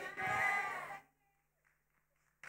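A drawn-out voice fading away within the first second, then near silence with only a faint, steady low hum.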